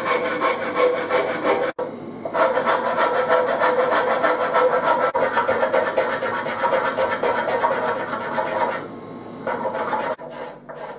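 Hand rasp filing the wooden neck of a mandolin, taking down the sides of the neck beside the fretboard in quick, continuous strokes. The rasping stops abruptly just before two seconds in, resumes, and pauses briefly near the end.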